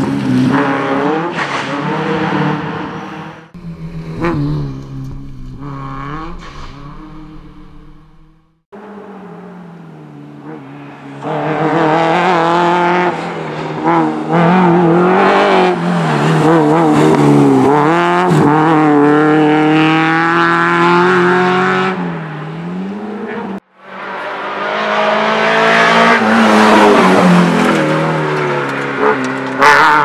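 Peugeot 309 GTI16 rally car's 16-valve four-cylinder engine revving hard through bends, its pitch climbing and dropping with gear changes and lifts. The sound is in several passes broken by sudden cuts.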